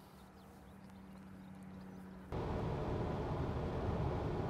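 Faint outdoor background with a low steady hum. A little over two seconds in, it gives way abruptly to steady road and engine noise heard inside the cabin of a 2020 Subaru Forester driving on a freeway.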